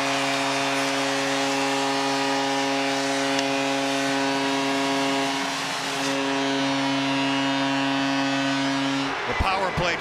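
Arena goal horn sounding a steady chord of several pitches over crowd noise, marking a home-team goal; its notes shift slightly about halfway through, and it cuts off about nine seconds in.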